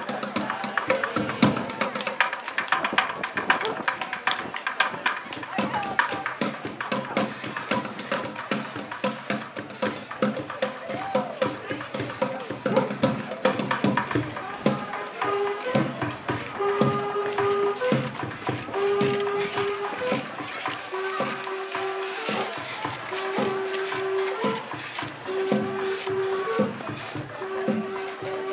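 Parade street music with sharp, frequent percussion clicks and knocks, and people talking among the crowd. From about halfway a single held note sounds again and again, about one every second and a half.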